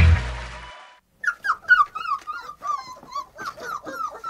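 Outro music fades out in the first second; after a brief silence, a dog gives a run of short, high whines, each falling in pitch, about three a second.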